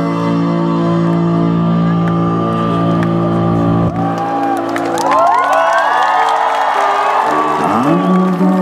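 Live band playing a slow instrumental passage with sustained keyboard chords. About halfway through, the audience starts cheering and whooping over the music.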